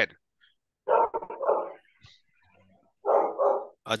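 A dog barking in two short bouts, about a second in and again just after three seconds, heard over a video call's microphone.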